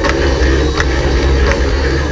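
Live heavy metal band playing at high volume over a concert PA, heard from within the crowd, dense and distorted with heavy bass and three sharp drum hits spaced evenly under a second apart.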